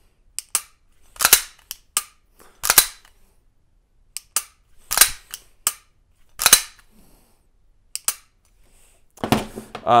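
Unloaded pistol being dry-fired: a series of sharp metallic clicks as the trigger breaks and is reset, about ten over eight seconds, the louder ones roughly every one to one and a half seconds.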